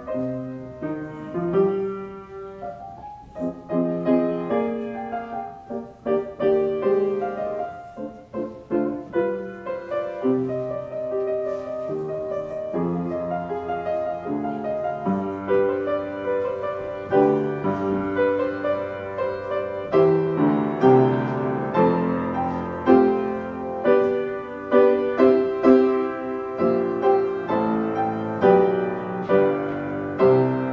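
Solo piano playing a church prelude, a slow melody over chords that grows fuller and louder about halfway through.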